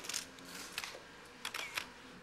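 Still cameras' shutters clicking several times in short separate bursts, as press photographers shoot a signing.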